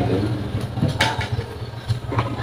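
Low rumbling room noise and handling noise from a handheld microphone, with one sharp click about a second in.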